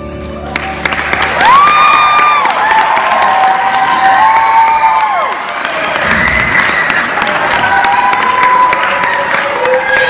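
A sustained musical chord fades out about half a second in. Then a school-theatre audience applauds and cheers, with many shrill whoops and children's shouts over the clapping.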